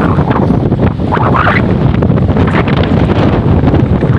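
Strong wind buffeting a phone's microphone: a loud, steady low rumble.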